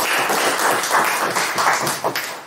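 Audience applauding: a dense run of many hands clapping, which fades out at the end.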